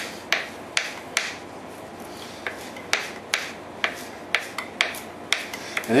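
Kitchen knife chopping fresh mint on a plastic cutting board: a run of sharp taps, about two a second, with a short pause between one and two seconds in.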